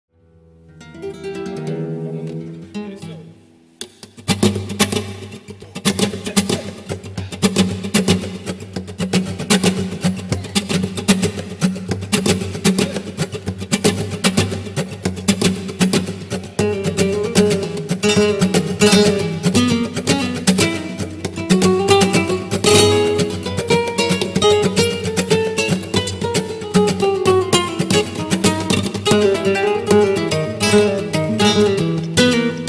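Two flamenco guitars playing a bulerías duet: a quieter opening phrase, then about four seconds in a fast, dense rhythm of sharp plucked and strummed attacks.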